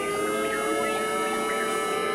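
Experimental electronic improvised music: several sustained electronic tones held together in a drone, sliding slowly in pitch.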